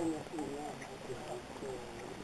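Indistinct voices of several people talking at once, fairly faint, with light footsteps on a road.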